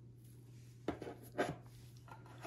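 Two light knocks about half a second apart, made by plastic lab ware being handled: a capped conical tube set back into its cardboard rack as the petri dish is reached for.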